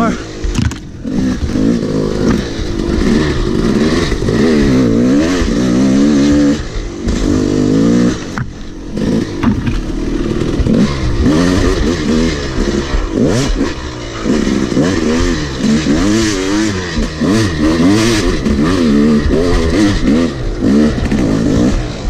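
Yamaha YZ250 two-stroke dirt bike engine revving up and down hard under constant throttle changes, heard close up from the bike itself. It drops off briefly about a second in, at about eight and a half seconds and at about fourteen seconds before picking up again.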